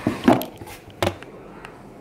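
Cardboard gift box being opened by hand: a brief scrape and rustle as the lid comes off near the start, then a sharp tap about a second in.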